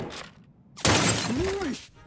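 Glass shattering in a loud crash about a second in, lasting about a second, after the tail of an earlier crash fades out at the start.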